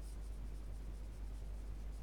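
A pen writing on paper, its tip scratching faintly, over a steady low hum.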